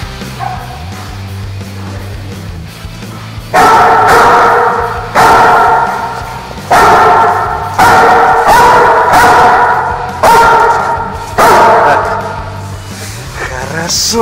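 Search-training dog barking, about eight loud barks that start a few seconds in, each one dying away over about a second.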